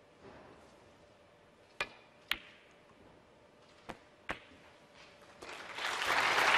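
Snooker balls clicking sharply in two pairs: the cue striking the cue ball and the cue ball hitting a red, then two more ball contacts about two seconds later as the red is potted. Audience applause starts to rise near the end.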